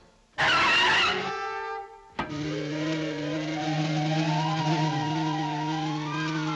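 Cartoon whoosh sound effect for a character dashing off at speed: a loud rush about half a second in that lasts under a second and fades away. A sharp click follows near the two-second mark, then orchestral cartoon music with a held low note and a slowly wavering higher tone.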